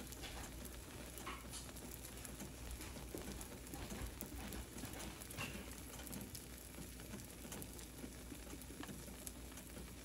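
Faint, steady sizzle of an egg frittata cooking in a nonstick frying pan, with a few small ticks and pops.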